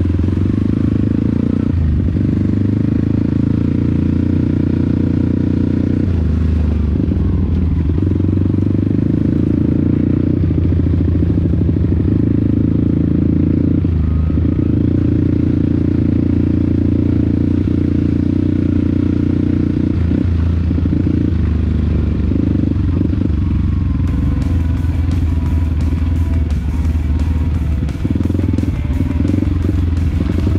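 Trail motorcycle engine running under way, its speed rising and settling in stretches of a few seconds as the rider works the throttle over a dirt track, with clatter from the bike over the rough ground in the last few seconds.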